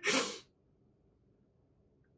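A woman's short breathy laugh, one burst of air about half a second long right at the start.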